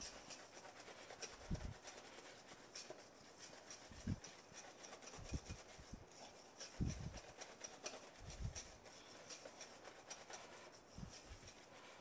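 Wire balloon whisk beating eggs and sugar by hand in a stainless steel bowl: a faint, fast, steady rasping of wire scraping the metal bowl, with a few soft low thumps. The mixture is being whisked until pale and fluffy.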